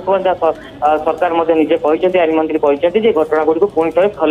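Speech only: a correspondent talking steadily over a telephone line, with thin, telephone-quality sound.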